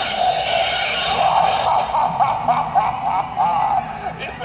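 An animated Halloween prop's small speaker playing a loud, jumbled sound effect full of quick warbling squeals. It starts abruptly and cuts off just before the end.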